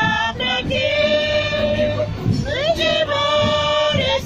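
A group of women singing a hymn together in Q'eqchi', holding long sustained notes.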